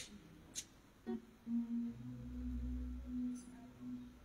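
Live church band music, played quietly: one held low note with a deeper bass beneath it in the second half, and a few short sharp clicks in the first second.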